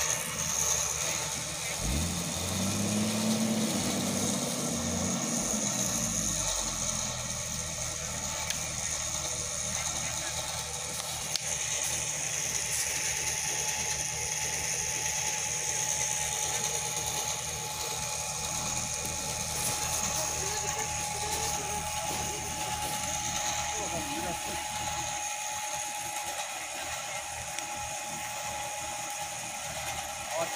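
Winch on the front of an off-road Jeep running steadily under load, reeling in its cable to drag a fallen fir tree off the road, with a steady mechanical whine. About two seconds in, a deeper drone rises and falls for several seconds.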